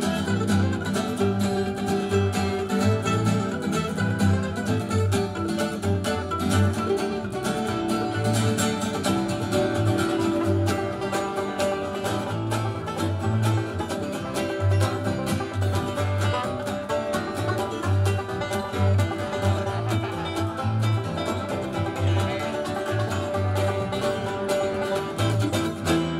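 Bluegrass band playing live: banjo, mandolin, acoustic guitar and bass guitar together, with a steady pulsing bass line under the picking.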